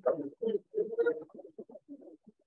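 Indistinct voices of people in the room, talking too low for words to be made out. The voices are busier in the first second or so, then break into short scattered sounds.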